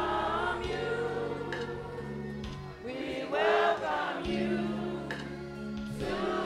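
A church congregation and choir singing a gospel song together over held low accompanying notes. The singing swells loudest about halfway through.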